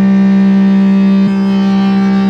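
Distorted electric guitar holding one long note through an amplifier and speaker cabinet, steady in pitch and level.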